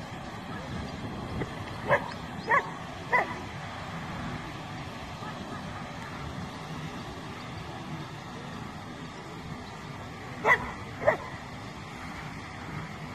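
A dog barking: three sharp barks about half a second apart a couple of seconds in, then two more near the end, over steady background noise.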